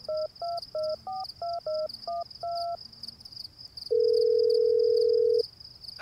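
A phone number being dialled on a touch-tone keypad: about eight quick two-note beeps in the first three seconds. Then comes a single long ringing tone on the line, about a second and a half. A steady high chirring of crickets runs underneath.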